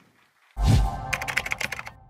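Short electronic logo sting: a sudden deep bass hit about half a second in, then a quick run of keyboard-typing clicks over a held tone.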